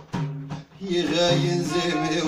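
Moroccan folk music played live on frame drums (bendir) and a violin bowed upright on the knee, with singing. Drum strokes open, the playing thins out briefly, then from about a second in the violin and voice carry the melody over the drums.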